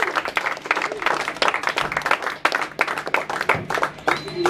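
An audience applauding between songs, with many separate, irregular claps.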